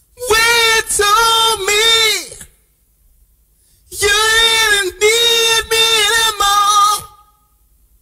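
A high female voice singing a short end-card jingle in two phrases of held notes: the first in the opening two seconds, the second starting about four seconds in and lasting about three seconds.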